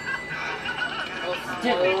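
Soundtrack of an animated cartoon playing from a laptop: a cartoon character's voice with music behind it.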